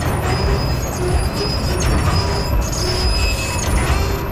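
A carousel turning: a steady rumble from the ride in motion, with short faint high squeaks now and then.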